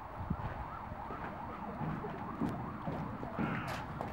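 A faint siren wailing quickly up and down, about three rises and falls a second, with a few soft low thumps near the start.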